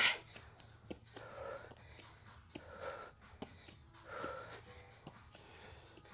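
A woman breathing hard while holding a plank during shoulder taps: three audible breaths about a second and a half apart, with a few faint clicks between them, over a low room hum.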